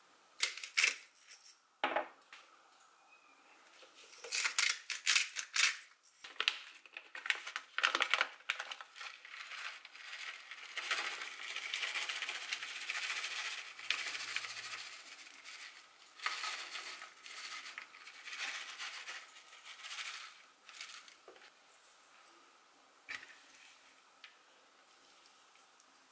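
Kitchen food-prep handling: sharp clicks and taps of a spoon and utensils against a steel mixing bowl, then a long crinkling rustle as dukkah spice mix is shaken from a plastic packet over raw chicken pieces, with more small clicks.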